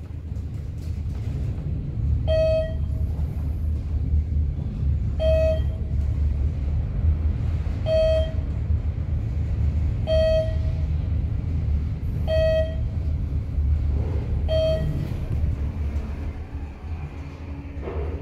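1971 Haughton traction elevator car travelling upward, with a steady low rumble from the moving car. A short electronic beep sounds about every two and a half seconds, six in all, as floors are passed; the rumble eases slightly near the end as the car slows for its stop.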